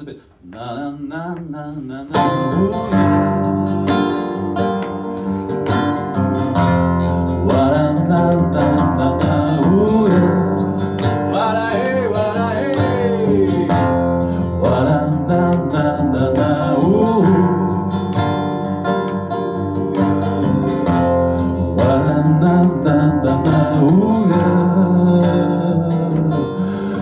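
Acoustic guitar played as the introduction to a song, quiet at first and then in full about two seconds in, running on steadily.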